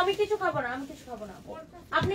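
A woman's voice in high, drawn-out exclamations that fall in pitch: one at the start and another near the end.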